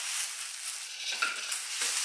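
Thin plastic grocery bag rustling and crinkling as it is handled and opened.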